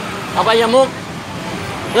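A voice speaking Thai in short phrases through a headset microphone, with steady street traffic noise in the gaps between words.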